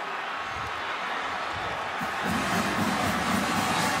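Stadium crowd noise after a touchdown, with a marching band's brass and sousaphones playing, the band growing louder from about two seconds in.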